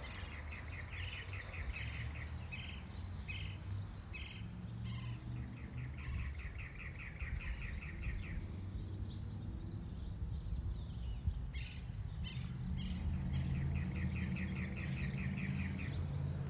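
A bird singing rapid trills of repeated short notes, several phrases of one to three seconds each, with other chirps above them, over a steady low outdoor rumble.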